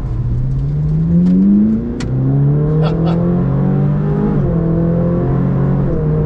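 Ferrari 458 Speciale's naturally aspirated V8 accelerating hard: the revs climb steeply for about two seconds, drop sharply in a quick dual-clutch upshift, then climb again more gently.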